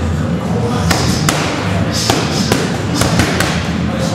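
Boxing gloves punching hand-held pads, a string of sharp smacks thrown in quick pairs of combinations.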